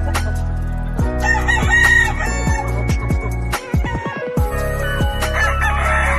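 A rooster crowing, about a second in, over background music with a steady beat.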